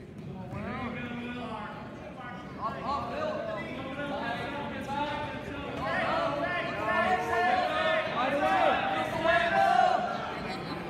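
Several voices shouting encouragement and instructions to wrestlers, overlapping one another and growing louder in the second half.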